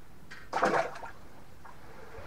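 A brief splash of water about half a second in, as a bass is released back down the hole in the ice.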